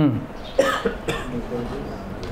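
A man's short 'hmm' falling in pitch, then two short coughs about half a second and a second in, with faint speech behind.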